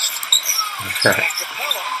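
Televised NBA game audio: a commentator talking faintly over the steady murmur of the arena crowd, with two low thuds about a second in, like a basketball being dribbled on the hardwood.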